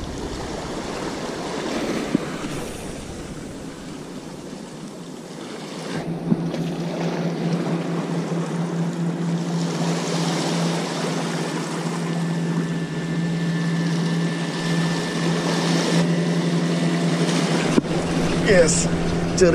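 Sea waves washing against shore rocks, with wind. About six seconds in, a boat engine's steady drone comes in and holds.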